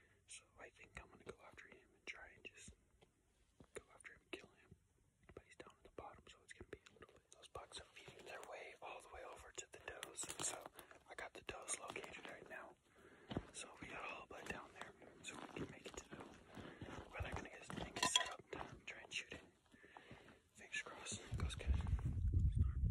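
A man whispering close to the microphone, with small clicks between the words. A low rumble comes in near the end.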